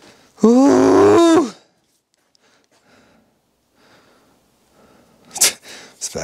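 A man's loud, wordless groan lasting about a second, then near quiet, then a single sharp knock near the end.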